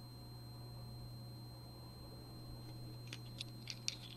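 Quiet room tone with a steady low hum. From about three seconds in come a few faint, light clicks as a jewelry card with dangling earrings and a chain is handled.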